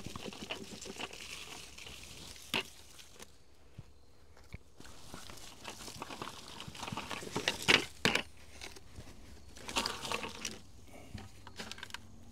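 Mini pine bark nuggets tipped from a bucket onto a blueberry bed and spread by hand: a loose crackling and rustling of bark chips. It is louder for a moment about two-thirds of the way in and again near the end.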